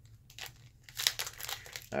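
Foil wrapper of a Pokémon booster pack crinkling as it is handled: a few scattered crackles at first, getting busier about a second in.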